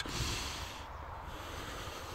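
A man drawing a slow, deep breath, a soft airy hiss that is strongest in the first second and fades after, over a low wind rumble on the microphone.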